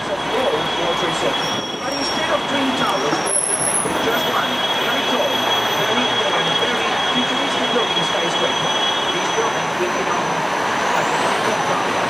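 Loud, steady city traffic and engine noise heard from the upper deck of a moving sightseeing bus, with a faint steady high whine running through it.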